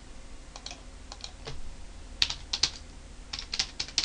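Typing on a computer keyboard: a few scattered key clicks, then quicker runs of keystrokes in the second half.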